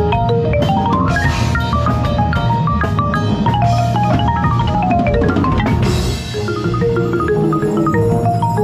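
Concert marimba played close up with four yarn mallets in fast runs of notes that climb and fall, over a steady low backing from the rest of the ensemble. Swells of noisy wash come in about a second in and again near six seconds.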